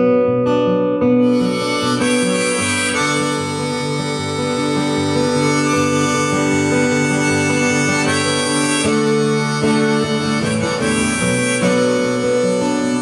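Harmonica solo played from a neck holder over acoustic guitar accompaniment. The harmonica comes in about a second in, playing long held notes that change every second or two.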